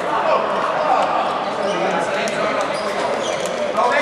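Several players' voices talking and calling, echoing in an indoor sports hall, with scattered sharp thuds of a handball bouncing on the court floor.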